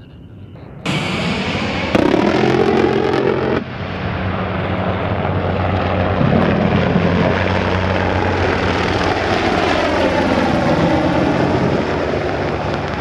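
A Fairchild Republic A-10 Thunderbolt II jet flying low, its twin turbofan engines running loudly and steadily with a low droning hum. The sound starts abruptly about a second in, and there is a louder stretch of about a second and a half just after.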